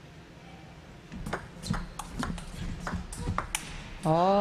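Table tennis rally: a plastic ball clicking sharply off the rackets and the table in quick succession, several hits a second, starting about a second in and stopping near the end.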